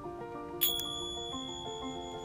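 A small bell is struck once about half a second in, its high clear tone ringing on for nearly two seconds. Soft background music with slow held notes plays throughout.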